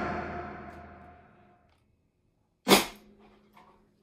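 The band's last electric guitar and drum chord rings out and fades away over about a second, leaving near silence. About two-thirds of the way in comes a single short, loud burst of sound.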